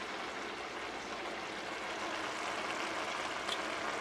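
Steady, faint sizzling and bubbling of food cooking on the stovetop.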